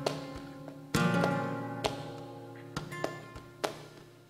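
Flamenco guitar accompaniment: a strummed chord about a second in rings and slowly fades. A few sharp handclaps (palmas) fall about a second apart over it.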